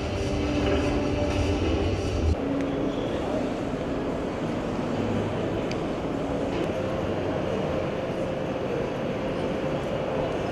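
Steady din of a busy indoor exhibition hall, with a heavy low rumble that cuts off abruptly about two seconds in.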